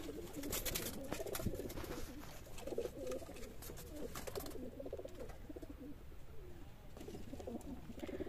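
Domestic pigeons cooing softly in a loft, with scattered light clicks in the first couple of seconds.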